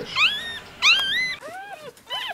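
One-day-old female miniature pinscher puppy crying while being handled: two loud, shrill squeals, each sliding down in pitch, followed by softer, lower whimpering cries near the end.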